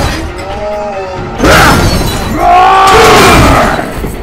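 Soundtrack music under robot-fight sound effects: a sudden loud crash about a second and a half in, then a longer, loud hit about a second later with a ringing tone that bends up and then down.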